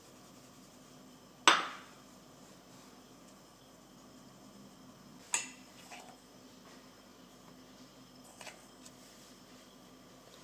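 Kitchenware knocking against a metal mesh sieve and bowl while flour is sifted: one sharp clink about a second and a half in, another about five seconds in with a small one just after, and a faint tap near the end, with quiet room tone between.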